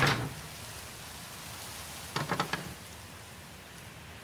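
Knocking on a wooden gate: one sharp knock at the start, then a quick run of about four knocks a little over two seconds in, over a steady hiss.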